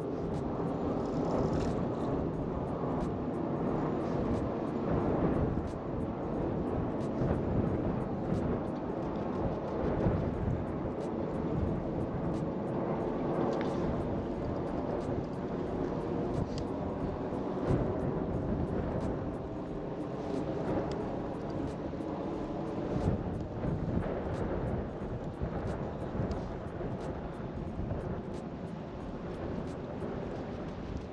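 Steady wind noise rushing over the microphone, with a faint low drone underneath.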